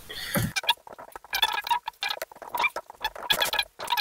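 Computer keyboard typing: a quick, irregular run of keystrokes with short pauses.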